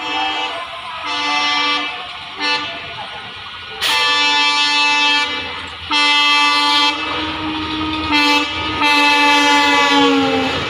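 Horn of an approaching WDM-3D diesel locomotive sounding a series of blasts, short ones and one long blast of about two seconds near the middle. The last blast drops in pitch as the locomotive passes.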